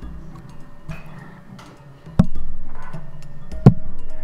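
A microphone bumped twice: two sharp knocks about a second and a half apart, the second louder, over faint background music.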